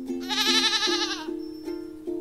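A goat bleating once: a single quavering call of about a second, over soft background music.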